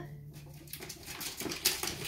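Ferrets scurrying and rustling at play: light scratching and pattering that grows busier, with a few sharper clicks in the second half.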